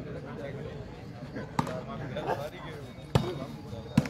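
A volleyball struck by players' hands three times: sharp slaps about a second and a half apart and then under a second apart, the second one the loudest, over faint chatter.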